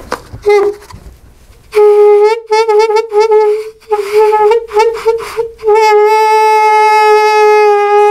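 Homemade balloon bagpipe: air escaping from a balloon through its stretched neck into a cardboard tube, the vibrating rubber sounding one steady-pitched note. A short chirp comes about half a second in. From about two seconds the note starts and breaks off several times in quick stutters, then settles into one long held tone for the last couple of seconds.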